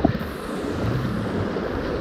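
Steady rushing of a fast-flowing river over shallow broken water.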